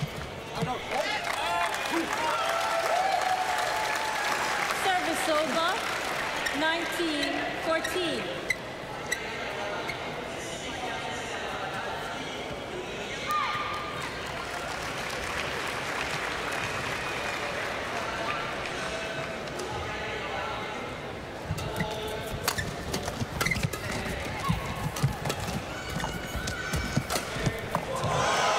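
Badminton arena crowd: voices and cheering for the first several seconds, then a steady murmur. Near the end a rally starts, with sharp racket-on-shuttlecock hits and players' shoes squeaking and thudding on the court.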